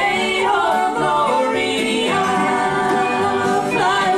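Three women singing together in harmony on long held notes, backed by acoustic guitars and upright bass, in a live acoustic country gospel performance.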